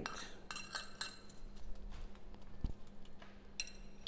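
Metal spoon stirring sliced apples in a ceramic pie dish, with scattered small clinks and scrapes of the spoon against the dish.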